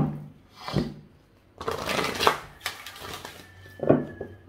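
A deck of oracle cards being shuffled by hand. A sharp tap at the start is followed by short bursts of riffling cards, the longest lasting about a second from around 1.6 s in.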